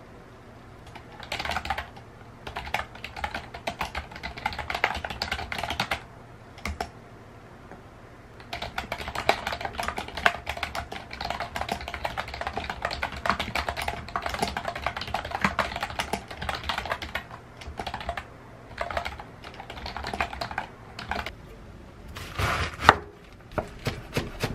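Fingers typing on a retro-style keyboard with round keycaps: runs of rapid key clicks broken by short pauses, with one louder knock near the end.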